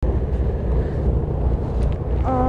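Wind buffeting the phone's microphone: a steady low rumble.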